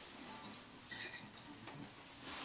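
Acoustic guitar being handled and settled into playing position: faint light taps and rubs on the wooden body, with a brief faint high tone about halfway through.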